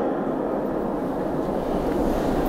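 Steady low background rumble with a faint hiss, with no distinct events; it grows slightly heavier near the end.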